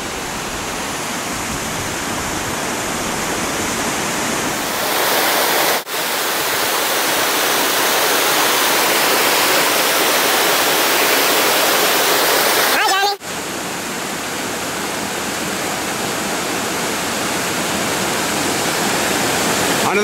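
Waterfall water cascading and rushing over rock slabs, a loud steady rush that grows louder and brighter about five seconds in. The sound cuts out briefly twice, near six and thirteen seconds.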